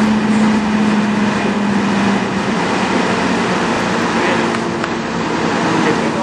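Claas Lexion combine harvesters running while harvesting: a steady machine drone with a held hum. The strongest hum tone fades about two seconds in, and higher, fainter tones come in later.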